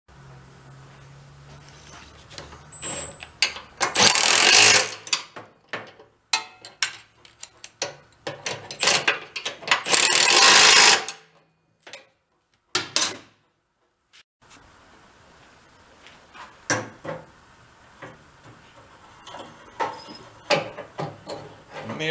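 A cordless power ratchet on a long extension runs in two bursts of about a second and a half, about four and ten seconds in, driving bolts into the snow blower. Scattered clicks and clinks of hand tools and metal parts fill the gaps.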